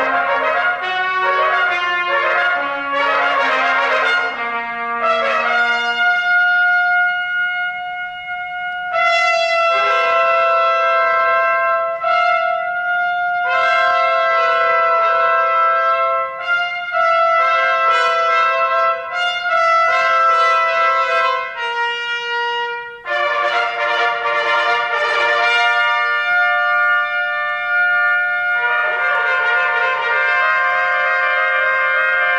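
Three trumpets playing together in a contemporary concert piece. Quick moving lines at first give way to long held chords that shift every second or two, then a busier passage comes about two-thirds of the way through, and a chord is held at the end.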